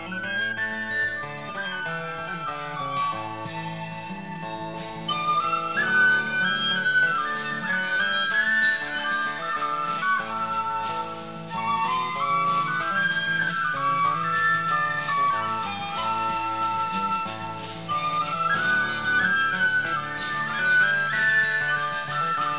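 Instrumental break in a folk song: a high woodwind plays the melody in a run of stepping notes over a lower, sustained accompaniment.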